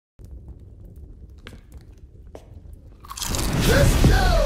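Two crisp crunches of a tortilla chip being bitten, then a sudden loud whooshing burst about three seconds in as the fireplace flames flare up, with a gliding synth tone starting just before the end.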